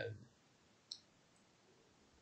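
Near silence, with one faint, short click about a second in.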